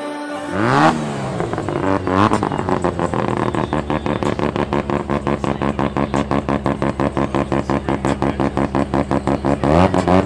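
Mazda RX-7 FD rotary engine starting up with a rev, blipped again about two seconds in, then settling into a fast, pulsing idle.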